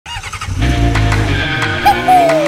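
Small motorcycle engine running, with music playing; the engine sound comes in about half a second in.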